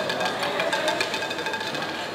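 Roulette chips clicking against each other in a quick, dense run as they are handled at the table, over steady musical tones.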